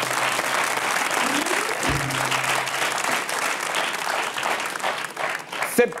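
Studio audience applause, with a short musical sting underneath: a brief rising note, then a held low tone.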